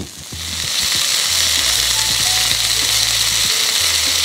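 Chicken breast searing in hot oil in a cast iron skillet: a steady sizzle that builds over the first second and then holds.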